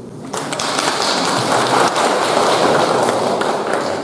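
Audience applauding, starting about a third of a second in and going on steadily.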